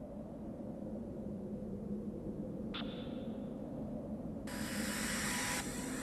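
A low rumble swelling steadily in loudness, with a brief high ping about three seconds in and a loud hiss breaking in near the end.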